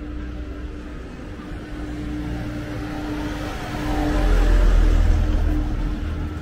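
A motor vehicle's engine passing close by, growing louder to a peak about four to five seconds in, then fading away.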